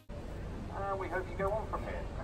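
Indistinct voices of people chatting on an open-deck river tour boat, a few short phrases about a second in, over a steady low rumble.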